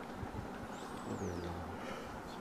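A pause in the talk: faint low background rumble, with a low hum swelling in the second half and a faint high chirp about a second in.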